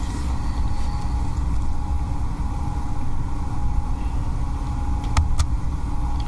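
Steady low rumble and hum of room background noise, with two short clicks about five seconds in.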